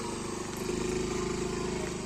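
Motor scooter's small engine running as the loaded scooter pulls away, growing louder a little under a second in.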